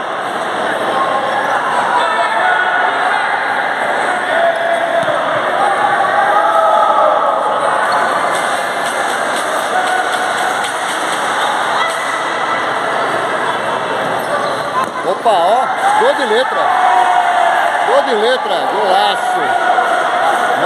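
Futsal spectators talking and shouting, echoing in an indoor gymnasium, with a few sharp ball-kick knocks about midway. The voices rise in the last few seconds as play goes on toward a goal.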